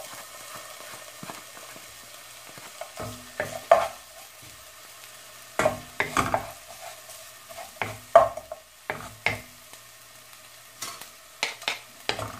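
Minced garlic sizzling quietly and steadily in oil in a non-stick pan at the start of a sauté. A wooden spatula scrapes and taps the pan in irregular strokes as the garlic is stirred.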